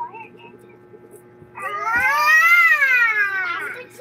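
A cat's long drawn-out meow, about two seconds, rising in pitch and then falling away.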